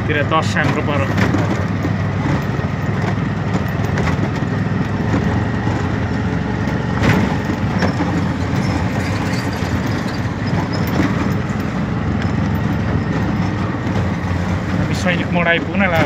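Auto-rickshaw driving along a road, its steady drone and road noise heard from inside the cab, with a single sharp knock about seven seconds in.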